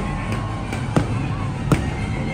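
Fireworks launching and bursting overhead: three sharp bangs, at the start, about a second in and near the end, over a steady low rumble.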